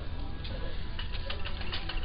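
Quiet indoor store ambience: faint background music over a low steady hum, with light irregular ticks.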